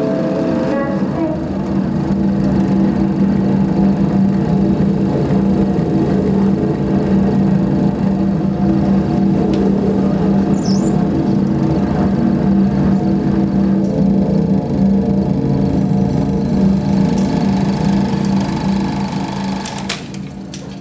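Loud, droning live performance soundtrack: a steady, buzzing low note with a machine-like noisy wash over it, which falls away near the end.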